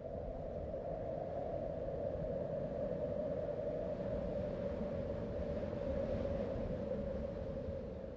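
A steady low rumbling drone with a hum in the middle range, the sustained sound of the closing soundtrack, beginning to fade away near the end.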